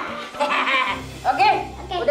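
Children's voices in short excited exclamations, with background music underneath.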